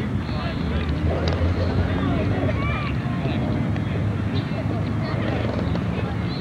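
Steady wind rumble on a camcorder microphone, with faint, indistinct voices in the distance.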